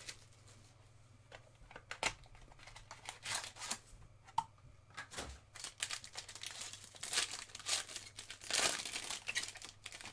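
Foil wrapper of a trading card pack being crinkled and torn open by hand, in irregular crackles that are loudest and busiest about seven to nine seconds in.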